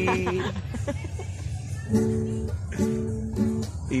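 Acoustic guitar strummed in short, separate chords: three quick chord strokes from about halfway through, after a man's held sung note trails off at the start.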